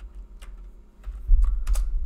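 Keystrokes on a computer keyboard: a single tap about half a second in, then a quick run of keys in the second half with dull low thumps beneath them, as the text editor is closed and a command is typed at the shell prompt.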